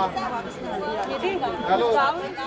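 Several people talking at once: overlapping chatter of a small group of voices.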